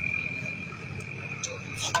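A steady high-pitched tone or trill holding one pitch, fading out near the end, with a couple of light clicks and a brief voice at the very end.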